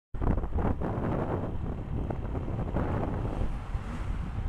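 Wind rushing over the microphone of a motorcycle-mounted camera while riding, over a low rumble of the motorcycle and its tyres on the road.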